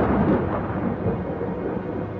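A loud rumble like thunder, heard between two passages of music in the soundtrack, loudest at the start and slowly fading away.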